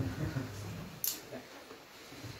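Faint, indistinct speech in a room, with a short sharp hiss about a second in.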